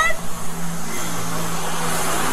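Steady street noise with a low hum, picked up by a police body camera's microphone. A woman's high-pitched wailing cry trails off at the very start.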